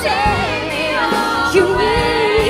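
A woman singing a pop song live with band accompaniment, her voice held on long wavering notes.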